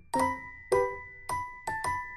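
Background music: a gentle melody of bell-like struck notes, about two a second and coming quicker near the end, each ringing on briefly.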